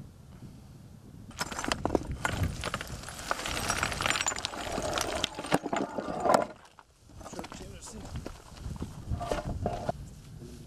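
Loose stone and marble fragments clattering and knocking as people step over demolition rubble and handle broken marble plaques, with voices talking over it. The clatter is densest in the middle and drops away for a moment about seven seconds in.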